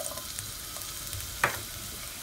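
Diced green pepper and onion sizzling steadily in a little olive oil in a wok as they sauté, with a single light knock about a second and a half in.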